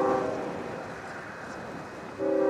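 Diesel freight locomotive's multi-chime air horn: a blast that cuts off a quarter second in, leaving a low, fading train rumble until the next blast.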